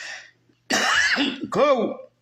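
A short breath in, then a man clearing his throat in two voiced rasps.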